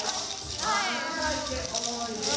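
Yosakoi dance music with a voice singing in a high, wavering pitch, and the clack of wooden naruko clappers shaken by the dancers.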